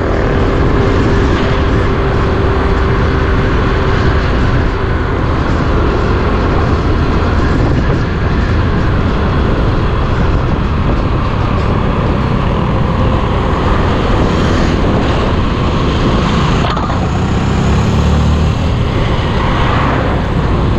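Wind rushing over the microphone of a rider's camera on a moving motorcycle, with the motorcycle's engine running steadily underneath.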